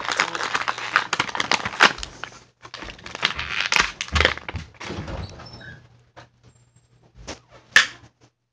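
Plastic action-figure packaging crinkling and rustling as the box is unpacked, in two long crackly bursts, then a few scattered clicks near the end.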